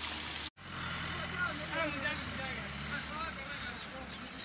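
A motor vehicle engine running steadily at idle, with faint voices talking over it. The sound briefly drops out about half a second in.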